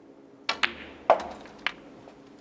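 Snooker balls clicking during a shot. The cue tip strikes the cue ball and there is a quick ball-on-ball click about half a second in. A louder knock with a short ring comes about half a second later, and a last click comes near the end.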